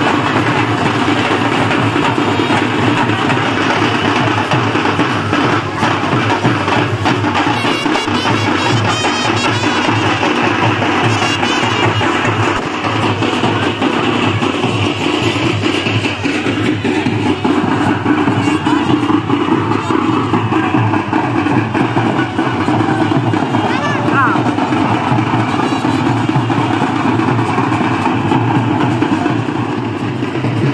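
Music with drumming and a voice, running steadily throughout.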